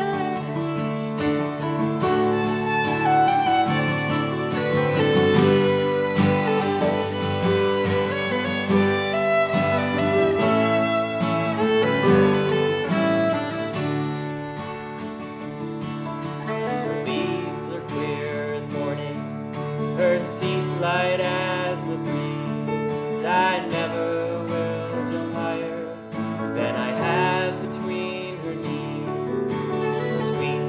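An instrumental break in an acoustic folk song: grand piano, violin and a Takamine acoustic guitar playing together with no voice. The playing gets somewhat softer about halfway through.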